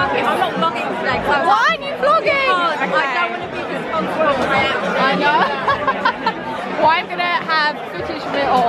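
Chatter of many people talking at once around a busy bar, with voices overlapping throughout.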